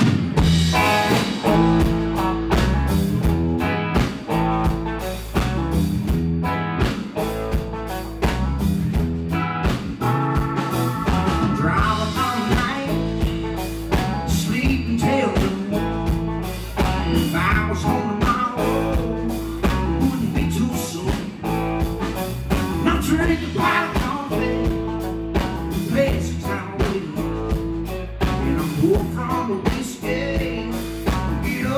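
Live rock band playing loudly, with electric guitars, bass guitar and drum kit; the full band comes in at once right at the start.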